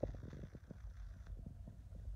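Handling noise on a handheld phone's microphone: a faint low rumble with soft, irregular clicks.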